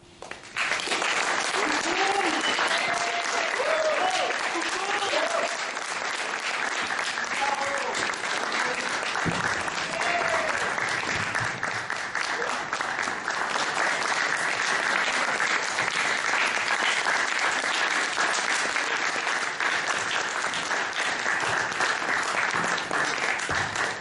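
Audience applause, breaking out suddenly about half a second in and going on steadily, with voices calling out over it in the first ten seconds or so.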